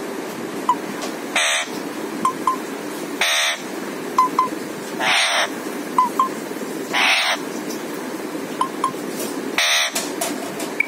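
Alexandrine parakeet giving five harsh squawks, about one every two seconds.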